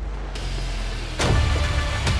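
Action-trailer sound design: a rush of noise builds about a third of a second in, then a heavy impact hits about a second in, and a speedboat's engine and water rush carry on louder after it, with music faintly underneath.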